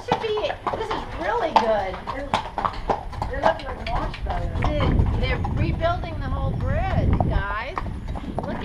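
A horse's hooves clip-clopping in a steady, irregular run of strikes as it is ridden across a covered bridge.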